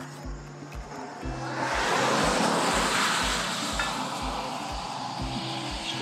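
A car passing by on a road: its noise swells about a second and a half in, peaks, and fades away over the next few seconds. Background music with a steady beat plays throughout.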